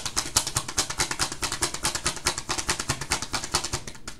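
A deck of tarot cards being shuffled by hand: a rapid, even run of card clicks, about ten a second.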